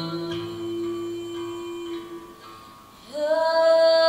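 A woman singing live in a slow vocal piece: a soft sustained note, then about three seconds in a loud high note slides up into pitch and is held.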